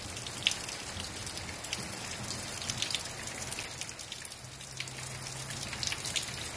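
Steady heavy rain falling, with many individual drops ticking sharply close by. A brief low hum comes in about four and a half seconds in.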